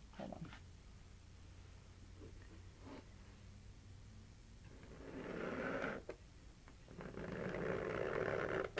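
Multi-fingered palette knife dragged through thick heavy-body acrylic paint across a stretched canvas: a soft rasping scrape, heard twice, about five seconds in and again near the end, over a low steady hum.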